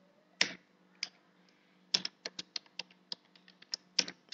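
Computer keyboard being typed on: two separate keystrokes in the first second, then a quick run of about ten keystrokes.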